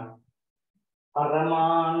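A man's voice: a spoken word trails off, then after a short pause one long drawn-out syllable is held on a steady pitch.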